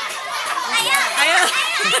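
Several children's voices calling and chattering at once, high-pitched and overlapping, with no single clear words.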